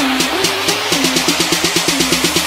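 Electronic dance music from a DJ mix: a steady beat over a stepping synth bass line, with the hi-hat-like ticks quickening from about four to about eight a second about half a second in.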